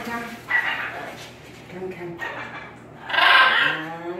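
Young blue-and-gold macaws calling with short grunting calls, then one loud, harsh squawk about three seconds in.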